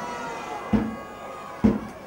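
Ambient sound of an open-air football match in play, with two short knocks about a second apart.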